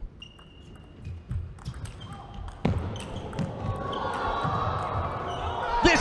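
A fast table tennis doubles rally: the plastic ball clicks off the bats and the table in quick succession, with one sharper, louder hit a little over two and a half seconds in. Crowd noise in the hall rises over the last two seconds as the point ends.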